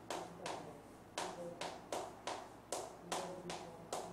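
Chalk writing on a blackboard: an uneven run of sharp taps and short strokes, about two or three a second.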